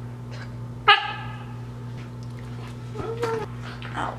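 A husky puppy gives one short, high-pitched yelp about a second in, then a softer, lower call about three seconds in, over a steady low hum.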